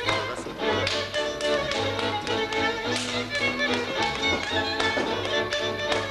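Folk string band music led by a fiddle over a pulsing bass, with sharp taps and stamps from a dancer's footwork on the wooden stage mixed in.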